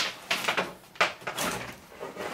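Fish line with wire taped to it being pulled by hand out from under the edge of a carpet along a baseboard: a sharp tug about every second, each followed by a short scraping slide.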